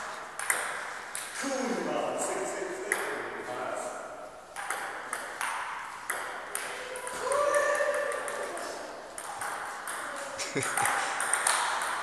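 Table tennis rallies: a celluloid ball clicking off rubber paddles and the table tops in quick, irregular succession.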